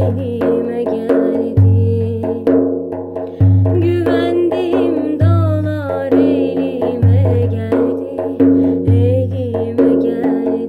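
Bendir frame drum played in a steady rhythmic pattern: a deep open bass stroke about every two seconds, with several lighter, sharper finger and rim strokes between them.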